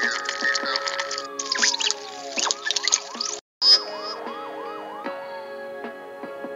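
Emergency-vehicle siren sound effect over music: a slow wail that rises and falls, then a fast yelp about two and a half seconds in, broken by a brief dropout. Steady music with plucked strings carries on and is left alone near the end.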